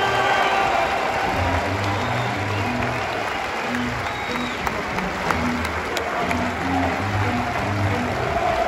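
A football crowd applauding the teams' walkout, a steady wash of clapping, over music with a low, plodding bass line.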